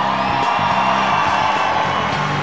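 Live audience cheering and applauding, with background music underneath.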